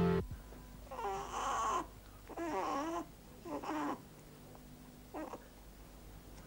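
Harpsichord music stops right at the start. Then a baby fusses: three short, wavering cries about a second apart and a brief fourth one near the end.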